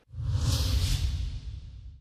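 News-channel logo sting: a synthetic whoosh with a deep rumble underneath. It swells in quickly and then slowly fades away.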